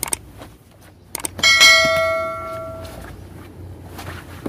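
Subscribe-button animation sound effect: a few sharp clicks, then two more clicks about a second in. A single bell ding follows, the loudest sound, ringing out for about a second and a half.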